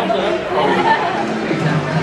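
Several people chatting at once, voices overlapping with no single clear speaker.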